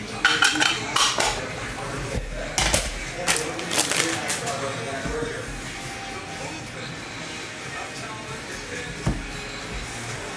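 Trading cards and clear plastic being handled by hand. A quick flurry of sharp crinkles and clicks over the first four seconds gives way to quieter shuffling of cards.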